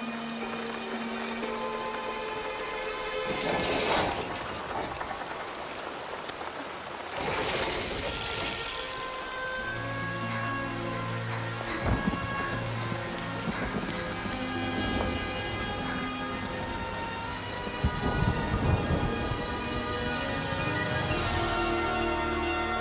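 Heavy rain falling steadily, with two loud surges of thunder, about three and a half and seven seconds in. Music with long held notes plays under it and grows fuller from about ten seconds in.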